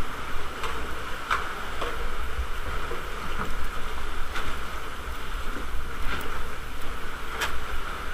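Sea water sloshing and lapping against rock walls in a narrow sea cave around a plastic kayak, with scattered light splashes and clicks about once a second from the paddle working the water.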